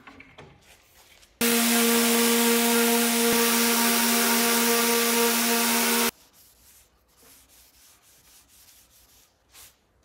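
Festool random-orbit sander running on a wooden box side: a steady motor hum with a hiss that starts suddenly about a second and a half in and cuts off suddenly about six seconds in. Faint soft strokes of a cloth rubbing on wood follow, more distinct near the end.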